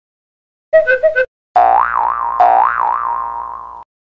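Cartoon boing sound effect: a short warbling blip about a second in, then two springy boings with a wobbling pitch, the second starting before the first has died away, fading out near the end.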